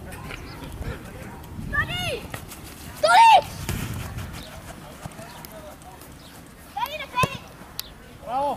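Children's high-pitched shouts and calls during a football game: a short call about two seconds in, the loudest yell about three seconds in, and two more near the end. Between them come a few short, sharp knocks of the ball being kicked.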